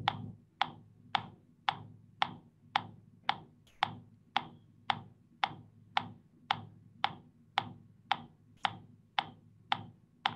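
Metronome clicking a steady beat, just under two clicks a second, with nothing else over it.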